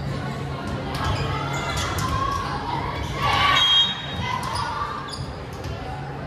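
Echoing gym noise at a volleyball match: players' voices calling out and a ball thumping on the hardwood court, with a louder call about three seconds in.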